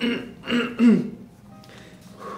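A man clearing his throat in three short bursts within the first second, the last one dropping in pitch, over quiet background music.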